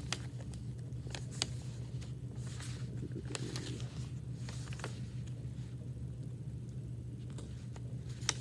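Sheets of paper handled and turned while leafing through a packet: scattered soft rustles and clicks over a steady low room hum.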